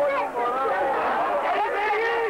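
Many voices talking over one another: chatter from a crowd of football spectators.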